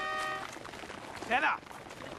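The last held chord of brass music breaks off about half a second in. It leaves faint background noise, with one short voice about two-thirds of the way through.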